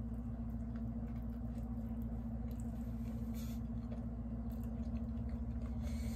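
Soft chewing of a bite of sushi roll, with a few faint mouth clicks, over a steady low hum.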